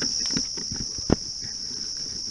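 A steady, high-pitched insect chorus shrilling without a break, with scattered crunches of footsteps in dry leaf litter and one sharp click about a second in.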